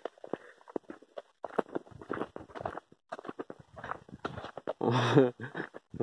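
Footsteps on a dirt path and the brush of leafy crop plants against the legs, as a series of irregular short steps and rustles.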